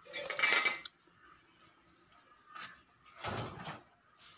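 Ceramic plates and dishes knocking and scraping on a wooden table in short bursts, the loudest at the start and another near the end.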